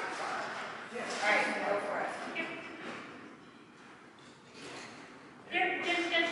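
A voice speaking, indistinct and echoing in a large hall, in two stretches: one early, then a lull, and speech again near the end.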